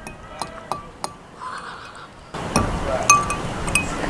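A metal fork clinking against a glass food container several times, each clink ringing briefly. About two seconds in, a louder rushing noise joins under the clinks.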